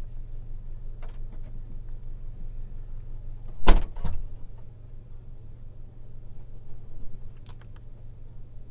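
Steady low hum of a parked car idling, heard from inside the cabin. About halfway through comes one loud clunk from the car's body, followed by a smaller one. A few faint clicks come near the end.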